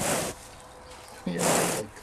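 A calf snuffling close to the microphone, one short breathy burst at the start, followed about a second in by a person saying "yeah".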